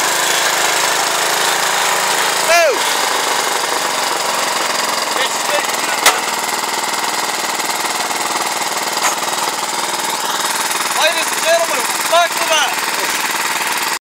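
Wheel Horse 701 garden tractor's single-cylinder Kohler engine running steadily as the tractor drives with its plow.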